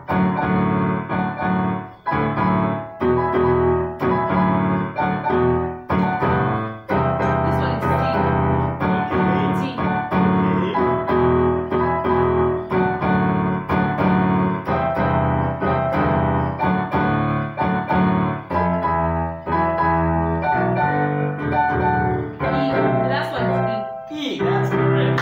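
Casio electronic keyboard playing a chord progression in a piano sound, with sustained chords struck about once a second.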